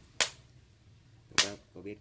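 Two sharp cracking pops about a second apart from a wok of wild seeded banana pieces dry-roasting over an open wood fire.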